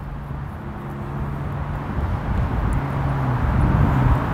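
Low, steady engine hum, growing gradually louder.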